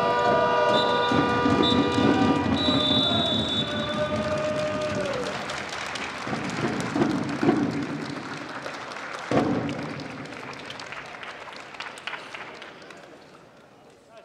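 Indoor arena crowd noise and applause under a sustained horn-like tone for the first few seconds, with short high whistle blasts. The sound fades out toward the end.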